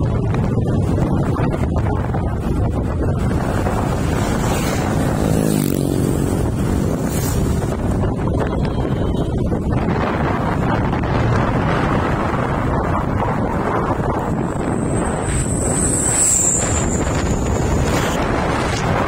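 Wind buffeting the microphone over the steady rumble of a vehicle travelling along a road. A thin high whine comes in briefly about three-quarters of the way through.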